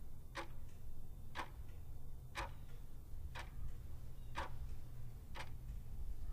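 A clock ticking steadily and quietly, about one tick a second.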